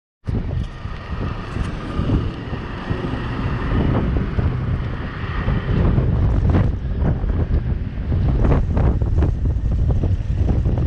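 Wind buffeting the camera's microphone in a loud, uneven low rumble, over the noise of street traffic.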